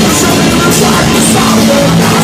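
Punk rock band playing live at full volume: distorted electric guitars, bass and a drum kit with cymbal hits about twice a second, in an instrumental stretch with no singing.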